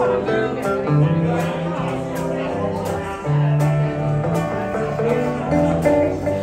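A small live band playing a country-style tune on electric guitars and a lap-played string instrument, with sustained notes over a low moving line and a steady strummed beat of about two strokes a second.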